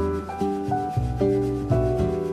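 Cello playing a melody over a low bass accompaniment, with the notes changing about every half second.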